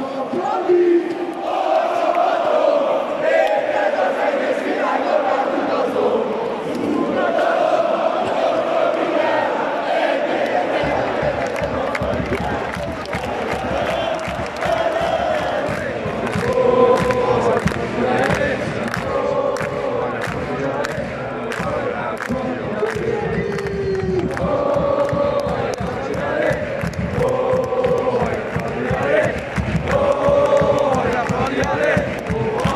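A large football crowd singing a chant in unison in a stadium, loud and sustained, with a steady rhythmic beat joining in about ten seconds in.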